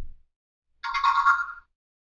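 Lego EV3 brick's short electronic chime, just under a second long, made of a few steady tones, signalling that the program has finished downloading.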